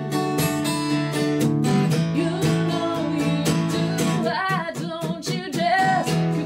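A woman singing live to her own strummed acoustic guitar, with steady strokes under the sung melody.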